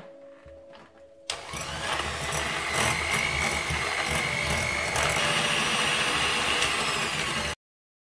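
Electric hand mixer switched on about a second in, its motor running with a steady high whine as the beaters mash chunks of steamed pumpkin in a glass bowl. The sound cuts off suddenly near the end.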